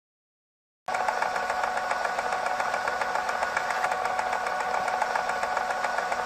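Silence, then about a second in a steady, machine-like hum and noise starts abruptly and holds level: the sound effect that goes with a production-company logo animation.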